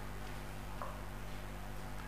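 A low, steady hum with a faint hiss in a short pause between a man's spoken sentences.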